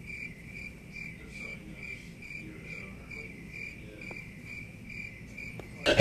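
Cricket chirping steadily, short even chirps at one pitch, about three a second.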